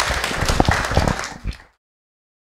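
Audience applauding, many hands clapping at once, until the sound cuts off suddenly a little before the end.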